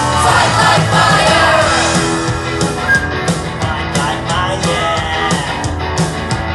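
A rock song with a drum kit and band backing, with a group of voices singing and shouting over it.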